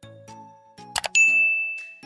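A subscribe-animation sound effect: a quick double mouse click, then a bright notification-bell ding that rings on and fades. Short notes of light background music run underneath.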